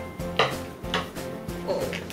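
Two sharp metallic clinks about half a second apart as a pair of metal scissors is put down on the table, over background music with a steady beat.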